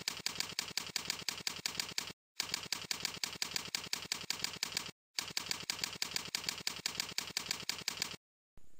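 Keyboard typing: rapid, even keystroke clicks in three runs, one for each email address typed on its own line, with a short pause between runs.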